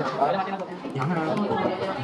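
Speech only: voices chattering.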